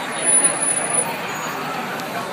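Street-march crowd: many voices talking at once over traffic noise, with a louder swell about half a second in.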